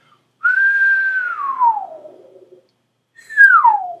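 A person whistling with the lips, two notes that each start high and slide down in pitch: the first is held briefly, then falls over about a second and a half, and a second, shorter falling whistle comes near the end. It shows the trick of whistling a really low pitch, the same mouth and tongue shape used to bend a harmonica note down.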